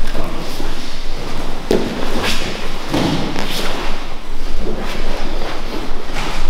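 Bodies and hands thudding and scuffing on a grappling mat during a jiu-jitsu roll, a series of irregular dull thumps.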